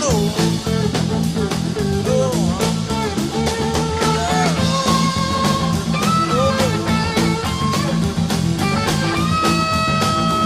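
Blues-rock music in an instrumental passage: an electric guitar plays a lead line with bent notes over bass and a steady drum beat.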